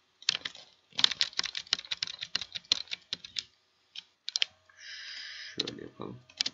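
Computer keyboard typing: a fast run of keystrokes, then a few single taps, with a short steady hiss about five seconds in.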